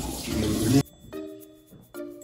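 Kitchen tap running into the sink, an even hiss under faint talk, cut off suddenly about a second in. Then background music with short repeated notes and a light, regular beat.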